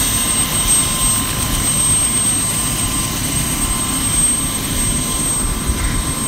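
Light two-blade helicopter running on the ground with its main rotor turning, a steady, continuous engine and rotor noise.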